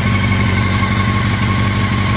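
Honda CBR600 F4i inline-four engine idling smoothly and steadily.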